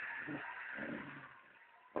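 Dogs play-wrestling, giving a few soft, low growls that fade out shortly before the end.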